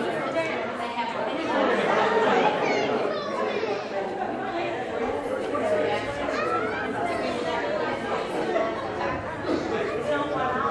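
Indistinct chatter of several people talking at once, overlapping conversation echoing in a large hall.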